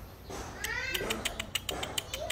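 Philippine long-tailed macaque giving a short, meow-like call that rises and falls in pitch about half a second in, followed by a run of sharp clicks.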